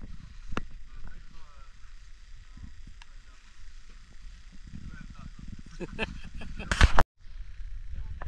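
Low voices and a few sharp handling clicks in a small group, then a short loud burst of laughter near the end, after which the sound cuts out for a moment.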